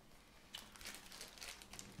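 Faint, irregular crinkling of small plastic bags being handled, starting about half a second in.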